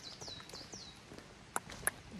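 A small bird singing a quick run of high, falling whistled notes, followed near the end by two sharp clicks.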